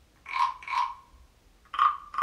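Frog-like croaks from a small hand-held frog call. There are two short croaks in quick succession early in the first second, and a third starts near the end.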